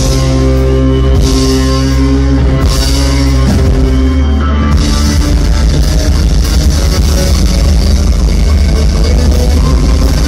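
Rock band playing live and loud with electric guitars and drum kit. The first four seconds or so are long held chords, then a busier, fuller passage follows.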